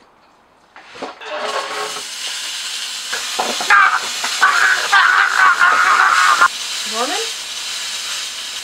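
A loud, steady hiss starts about a second in, as smoke fills the frame, with a man's drawn-out strained cries over it through the middle. A woman's voice calls out near the end.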